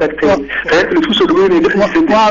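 Speech only: a person talking without pause, in broadcast studio sound.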